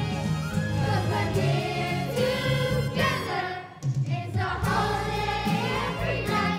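Grade 6 children's choir singing a holiday song with instrumental accompaniment, with a brief pause between phrases a little before four seconds in.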